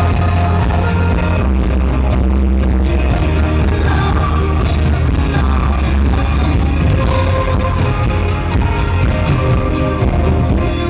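Live rock band playing an instrumental stretch on electric guitars, bass and drums, loud and dense.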